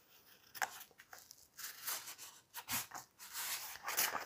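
Soft, short rustles and scrapes of thick textured wallpaper handled and folded by hand on a cutting mat.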